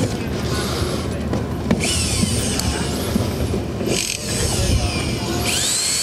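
Power drill fixing a ribbed roof sheet with screws, running in four short runs a second or two apart, some with a rising whine, over a steady low rumble.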